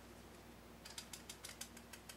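Metal flour sifter being worked by hand to dust powdered sugar, its mechanism clicking rapidly and faintly from about a second in.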